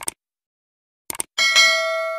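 Subscribe-button animation sound effect: a quick double click, another double click about a second later, then a bright notification-bell chime that rings on and slowly fades.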